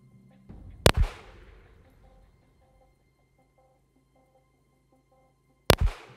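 Two pistol shots about five seconds apart, each trailing off in a brief echo: slow, deliberate aimed fire.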